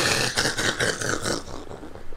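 A man's breathy, wheezing laughter, a run of rapid airy pulses with little voice in it, fading over about a second and a half.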